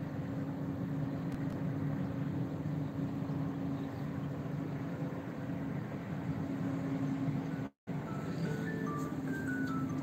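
Steady low urban background hum with a constant drone, briefly cut to silence by an audio dropout about eight seconds in. Right after the dropout, a short tune of high, evenly stepped notes starts.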